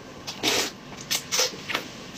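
Noodles in broth being slurped off chopsticks: one long, loud slurp about half a second in, then three shorter slurps.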